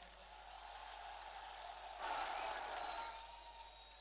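Faint crowd noise from the rally audience, swelling briefly about two seconds in and then fading.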